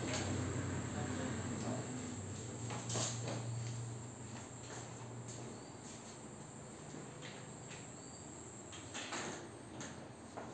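Quiet background with a low steady hum that fades out about halfway, a faint steady high whine, and a few soft knocks and creaks as a patient is moved on a padded treatment table.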